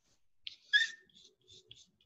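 Palette knife working oil paint on a paper palette: faint, short scraping strokes. About three-quarters of a second in there is one brief, loud, high-pitched squeak.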